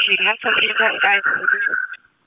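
Police two-way radio traffic: a man's voice over the radio, narrow and cut off in the highs, with a rough, noisy stretch of transmission after the word.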